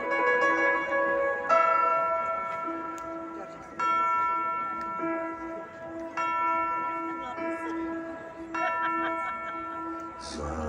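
A live band plays a slow passage of bell-like chords over a concert PA, heard from far back in an open-air crowd. A new chord sounds about every two seconds, five in all, each ringing and fading over a steady held low note.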